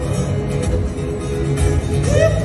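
Live band music from a stadium concert, heard through the venue's sound system from high in the stands, with a strong pulsing bass.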